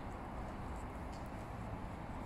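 Faint, steady outdoor background: a low rumble with a light hiss and no distinct events.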